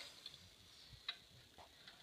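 Near silence with a few faint clicks and taps from circuit boards being handled, the clearest about a second in.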